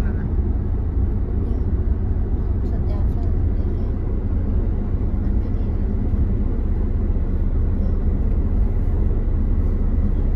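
Steady low rumble of road and engine noise inside the cabin of a moving Toyota.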